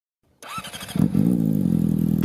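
Motorcycle engine starting: faint cranking, then it catches about a second in and settles into a steady idle.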